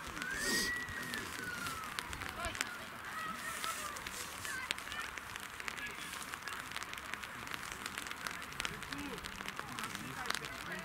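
A single long whistled note that glides up and then back down over about a second and a half, near the start, over faint distant voices and light crackling.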